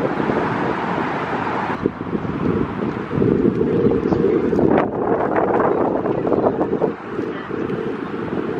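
Wind buffeting the camera microphone outdoors, a loud steady rumble and hiss that changes character about two seconds in.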